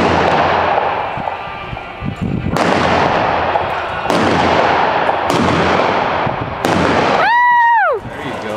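Revolver blanks fired from horseback in cowboy mounted shooting: one shot as it opens, then four more about a second and a half apart, each ringing on in a long echo off the metal arena walls. Near the end, a brief high tone rises and falls.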